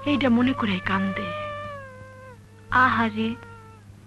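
A woman's voice in short bursts, with one long, high-pitched call held for over a second and gliding slowly down between them.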